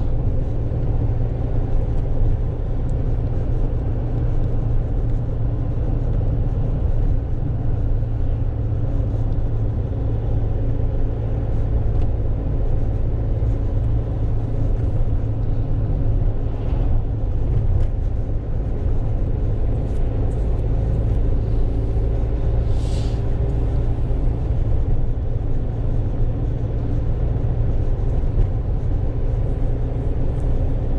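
Steady engine and road rumble heard inside the cab of a Fiat Ducato van as it drives along a road.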